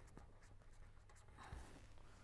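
Faint scratching of a pen writing on paper, with a few light ticks of the pen tip.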